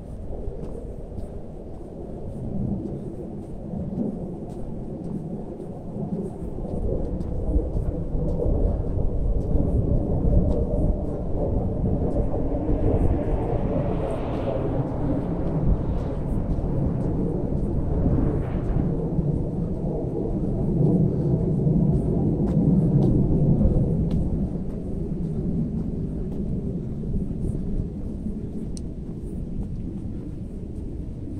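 Loud, uneven low rumble of wind and travel noise on the camera's microphone while moving along the road, swelling about six seconds in and easing toward the end.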